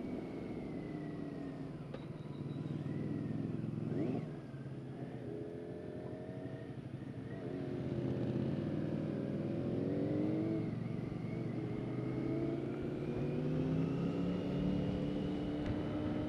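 BMW K1600GT's inline-six engine under way, its pitch rising and falling a few times as the throttle is opened and eased. There is a sharp drop in pitch about four seconds in.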